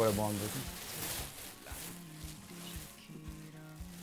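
Clear plastic wrapping crinkling and rustling as it is handled and pulled off an acoustic guitar, loudest in the first second or so, over faint background music.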